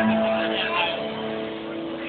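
Live rock band heard through a loud PA in a muffled, band-limited amateur recording: a held, ringing electric guitar chord with voices over it in the first second, dying down a little after that.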